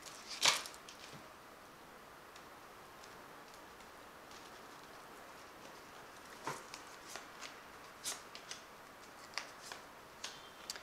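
A tarot card deck being shuffled by hand: one crisp card flick about half a second in, then a near-quiet stretch, then a run of faint card snaps and taps over the last few seconds.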